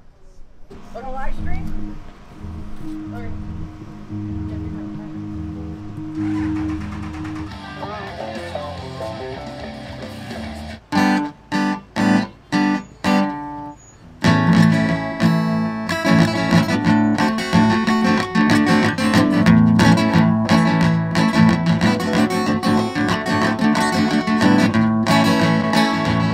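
Live band with electric guitars and drums playing through a PA: quieter playing at first, then four short stopped chords just past the middle, after which the full band comes in loud and keeps going.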